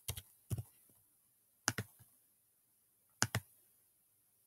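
Keystrokes on a computer keyboard and mouse clicks, a few short pairs of sharp clicks about a second apart, made while editing code and clicking a button to re-run the check.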